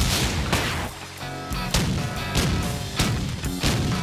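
Cartoon soundtrack music punctuated by a series of sharp, booming hits, about seven or eight in four seconds at irregular spacing.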